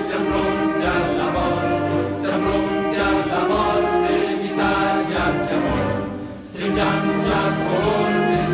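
Choral music with orchestra: voices holding sustained chords that change every second or so, dipping briefly about six seconds in before resuming.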